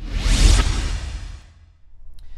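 Whoosh sound effect with a deep bass hit for an animated logo intro. It swells suddenly, is loudest about half a second in, and fades out by about a second and a half.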